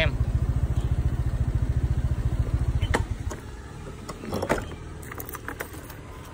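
Small motorbike engine running with a steady fast low pulse as the bike stops, then cutting off suddenly with a click about three seconds in as it is switched off. A few faint clicks and knocks follow.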